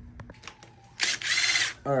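Cordless electric screwdriver running in one short whirring burst of under a second, after a few faint clicks.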